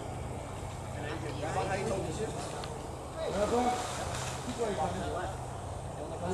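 Faint, distant talking in short phrases over a steady low hum.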